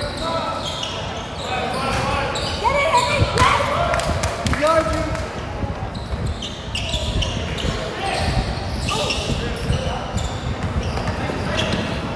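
Basketball bouncing on a hardwood gym floor during play, with sneaker squeaks and indistinct shouts from players in a large, echoing gym.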